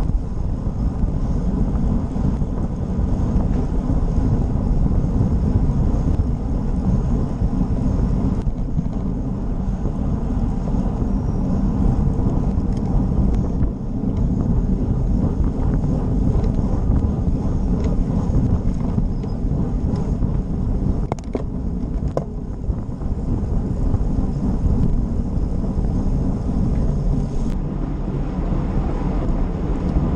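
Wind buffeting the microphone of a GoPro Session action camera mounted on a road bike riding at speed, a steady rumble mixed with road and tyre noise. A few sharp clicks come through in the last third.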